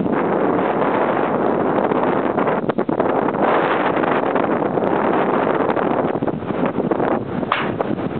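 Wind buffeting the microphone: a loud, steady rushing noise, with a brief dip about three seconds in.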